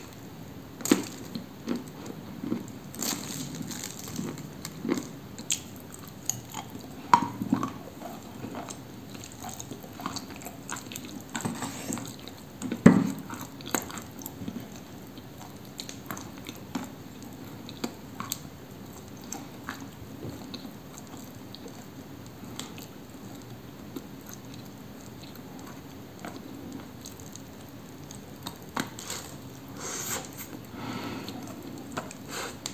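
A person biting and chewing pieces of clay cookie made of Cambrian clay, with irregular crunches and wet mouth clicks. The sharpest crunches come in the first half, the loudest a little before halfway, then the chewing goes on more softly.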